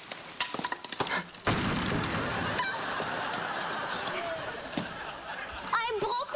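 A door being forced, rattling and knocking a few times, then a sudden loud crash about a second and a half in, followed by several seconds of studio audience laughter.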